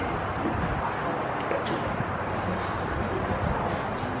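Outdoor ballfield background: indistinct voices of people talking at a distance over a steady rumble of background noise, with a few faint clicks.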